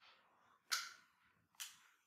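Quiet room with two sharp clicks about a second apart, the first one louder.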